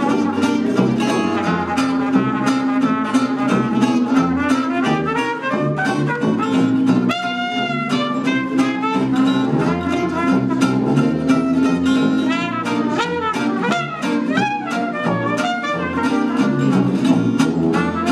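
Small acoustic jazz trio playing: trumpet lead over a steadily strummed acoustic guitar beat and a bass saxophone line, with a long held trumpet note about seven seconds in.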